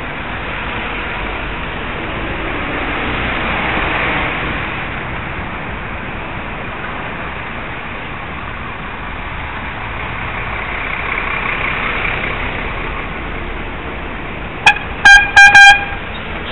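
Steady wind and traffic noise from riding a bicycle through traffic. Near the end a horn gives several short, very loud blasts in quick succession.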